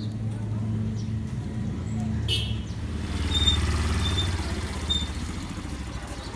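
Motorcycle engine running close by and passing, loudest around the middle and fading toward the end, with a few short high chirps over it.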